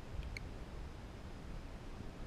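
Low, uneven rumble of wind buffeting the weather balloon payload's GoPro camera. About a third of a second in there is one short, high beep.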